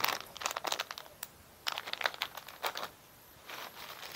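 Plastic packaging crinkling as it is handled: short, irregular crackles, with a brief pause about three seconds in.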